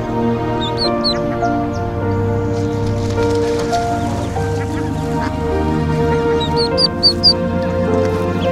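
Soft background music with held notes, over which a duckling gives a few short, high peeps about a second in and a quicker run of peeps near the end.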